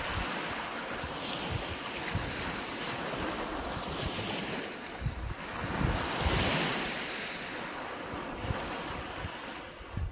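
Small waves breaking and washing up a sandy beach, swelling to their loudest about six seconds in, with wind buffeting the microphone.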